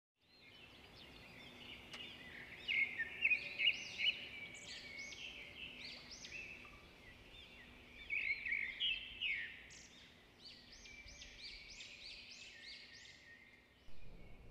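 Small birds chirping and singing: many short, quick, arching calls overlapping, in denser, louder clusters a few seconds in and again about two thirds of the way through.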